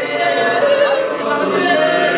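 A small group of voices singing a cappella in several overlapping parts: the Bunun and Truku part-singing called eight-part harmony (八部合音). The notes are held and slide smoothly from one pitch to the next, with no pause.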